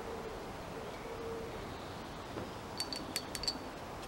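Quiet garden ambience with a pigeon cooing faintly in the first second or so, then a quick run of about six light, ringing clinks close together near the end.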